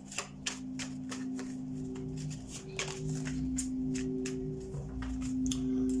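A deck of tarot cards being shuffled by hand: a run of quick, irregular soft clicks. Underneath are steady low droning tones of background music, with a higher tone that comes and goes.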